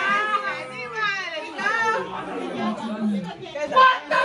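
Several adults talking over one another and laughing, with overlapping voices and no clear words.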